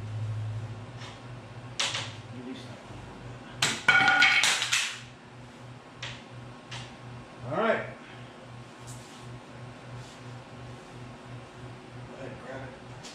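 Steamed wooden board being handled and worked into a bending jig: a few sharp knocks, then a louder clattering scrape of wood about four seconds in, over a steady low hum.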